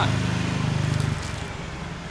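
A motor vehicle's engine passing close by on the street, a steady low hum that dies away a little over a second in.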